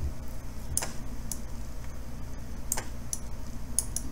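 Computer mouse clicking about half a dozen times at uneven intervals, over a low steady hum.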